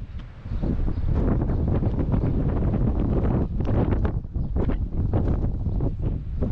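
Wind buffeting the microphone: a loud, gusting rumble that rises and falls.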